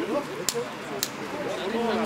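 People talking nearby, unclear untranscribed speech, with two sharp clicks about half a second apart near the middle.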